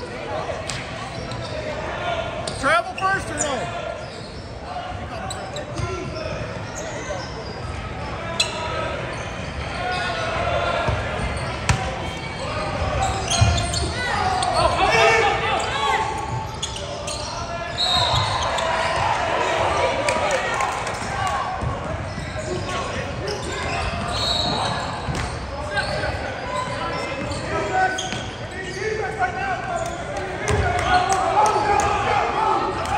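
Basketball game sound in a gym: a ball bouncing on the hardwood court with scattered knocks, under players' and spectators' voices calling out and chattering.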